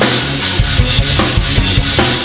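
Rock drum kit played hard along to a band backing track: a thick wash of Sabian cymbals over regular kick drum hits, with bass notes underneath.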